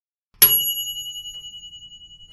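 A single bright bell ding, the notification-bell sound effect of a subscribe button, struck about half a second in and ringing out in a long, wavering fade.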